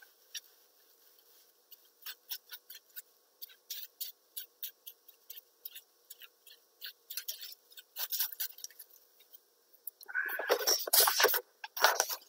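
Clear plastic wrap crinkling and crackling under fingertips as it is pressed and pushed around over wet ink on a glass mat. There are scattered short crackles throughout, thickening into a louder, fuller rustle for a second or so near the end.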